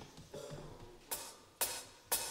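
A count-in of sharp clicks, evenly spaced about two a second, beginning about a second in, over the faint shuffle of a congregation rising from their chairs.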